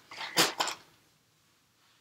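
A few brief handling noises, a small knock and rustle, in the first second as items are moved on the desk, then quiet room tone.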